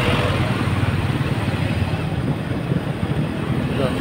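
Motorcycle engine running steadily on the move, a low drone under a constant rush of road and air noise.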